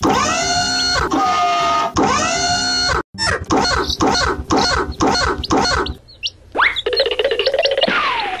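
Cartoon soundtrack music and sound effects. Two long synthesized tones bend up and down, then a run of about six short sliding notes comes at a bit over two a second. Near the end a rising sweep leads into a noisier held sound.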